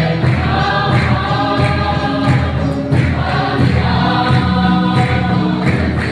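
A congregation singing a hymn together, with a keyboard and a drum keeping a steady beat and hands clapping in time.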